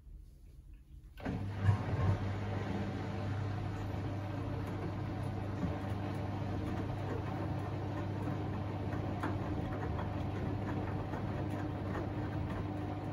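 Samsung WW90J5456FW front-loading washing machine's drum motor starting about a second in and turning the drum, with a few thumps as the wet laundry starts moving. Then a steady motor hum as the load tumbles.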